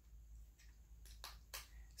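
Near silence, with two or three faint clicks about a second and a half in as the speargun reel's drag knob is turned.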